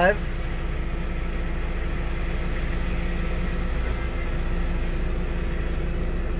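A steady, unchanging low engine rumble with a faint even hum above it.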